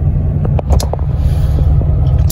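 Steady low rumble of a car heard inside its cabin.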